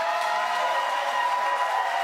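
Studio audience laughing and applauding after a punchline, with several steady held tones sounding over the clapping.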